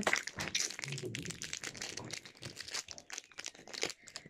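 Kinder Egg foil wrapper and packaging being crinkled and opened by hand, a run of small crackles and clicks that thins out in the second half.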